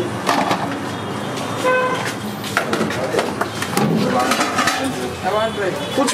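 Busy street ambience: indistinct voices and chatter over traffic noise, with a short steady tone about two seconds in.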